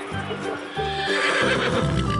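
A horse neighing in the second half, over background music with a steady beat.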